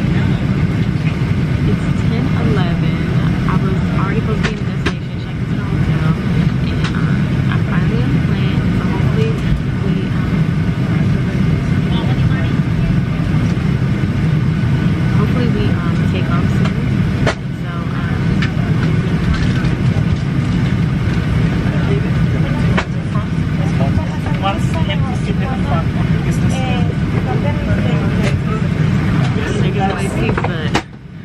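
Steady low drone of airliner cabin noise, the jet engines and air rushing past, with faint voices underneath.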